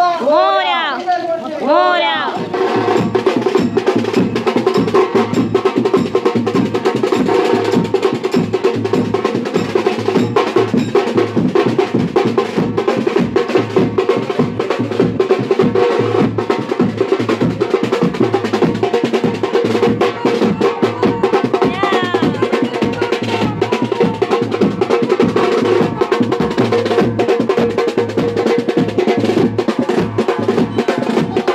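Street procession drum band of snare drums and a bass drum beaten with sticks and a mallet, playing a fast, steady rhythm. A brief wavering pitched call comes just before the drumming starts.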